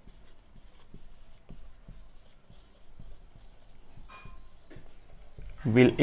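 Marker pen writing on a whiteboard: a run of short, faint strokes as a couple of words are written, with a thin high squeak about three to five seconds in.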